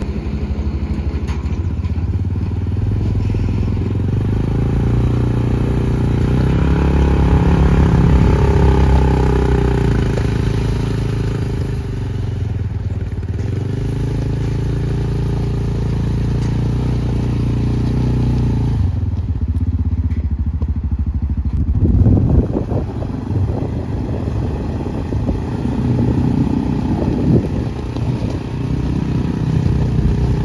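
A 2013 Yamaha Frontrunner 700 side-by-side UTV engine runs as the machine is driven slowly around, its pitch rising and falling with the throttle. From about two-thirds of the way through, the crunch of its tyres rolling over loose gravel is mixed in.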